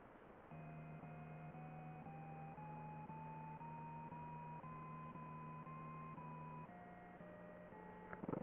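A sequence of electronic beep tones, about two a second, climbing step by step in pitch over a steady low tone, then dropping lower about seven seconds in.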